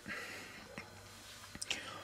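A short pause with faint room hiss, a few small mouth clicks and a quick breath as a man gathers himself before speaking again.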